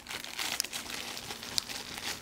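Dog rummaging with its nose through a wicker basket of collars, leashes and fabric: irregular rustling and crinkling with small scattered clicks, and sniffing.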